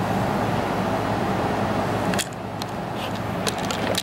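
Steady low hum and hiss that drops away about two seconds in, then a few sharp clicks and knocks of a handheld camera being handled.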